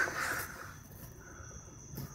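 Quiet background with a faint, steady high-pitched whine.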